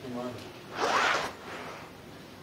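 A brief voice, then a loud rasping scrape lasting about half a second, about a second in, close to the microphone.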